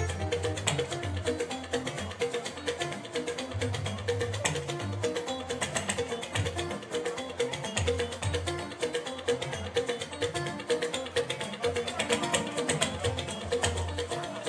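Live fuji band music: a dense, steady beat of drums and shakers with electric guitar and bass.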